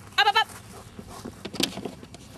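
A short, wavering, bleat-like call about a quarter second in. Near the end comes a sharp knock as a German Shepherd scrambles up onto a wooden wall obstacle.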